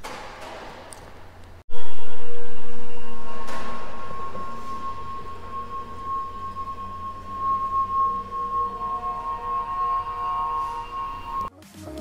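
A single resonant bell-like tone starts suddenly about two seconds in, after a brief drop to silence, and rings on with several steady pitches, slowly fading over the following seconds.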